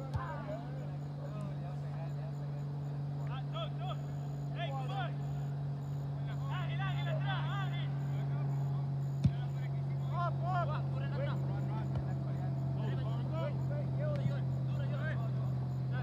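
Soccer players' distant shouts and calls across the field, coming in several short bursts over a steady low hum, with a single sharp knock about nine seconds in.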